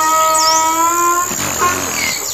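Donkey braying: one long, steady, pitched note that breaks off about a second and a half in, followed by a shorter, lower note. A bird chirps once in the background.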